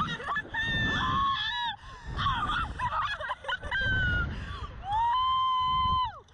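Two women screaming and shrieking with laughter as the slingshot ride flings them through the air, in a run of high-pitched shrieks. Near the end comes one long scream held on a steady pitch.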